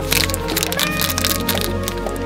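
A thin plastic snack wrapper crinkling and crackling as it is handled and torn open by hand, over background music.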